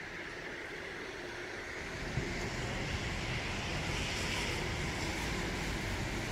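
Steady street noise: a rushing hiss with a low rumble that grows louder about two seconds in.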